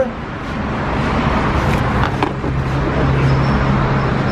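A motor running steadily nearby, a low hum over a constant background noise that grows louder about three seconds in.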